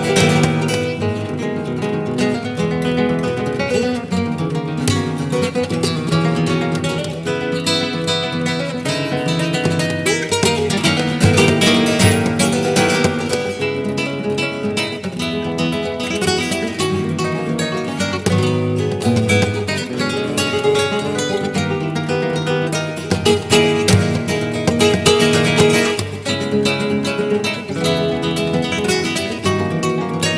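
Two flamenco guitars playing a bulerías duet together, a continuous stream of notes and sharp accented chords.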